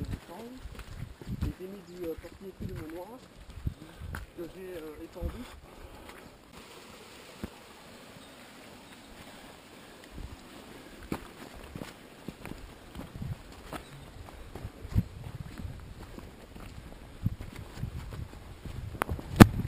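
Indistinct voices talking for about the first five seconds, then quieter footsteps of hikers with scattered soft thuds on a leaf-covered forest path.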